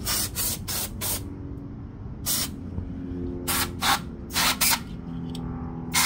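Aerosol brake cleaner sprayed from the can in about ten short hissing bursts, in quick clusters.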